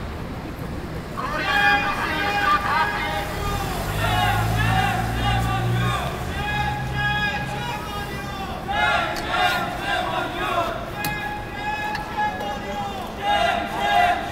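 Several people's voices, raised and talking in bursts, over street noise. A low engine rumble comes in about four seconds in and lasts about two seconds.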